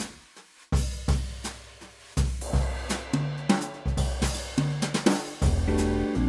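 Sampled drum kit from a Yamaha Genos arranger keyboard, played from the keys. A sparse groove of kick, snare and cymbal hits starts about a second in. Held pitched notes join near the end.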